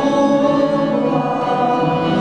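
A man singing long held notes into a microphone, accompanied by an ensemble of accordions playing sustained chords.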